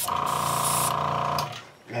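An airbrush hisses as it sprays paint, with a small airbrush compressor buzzing steadily under it. Both cut off about a second and a half in.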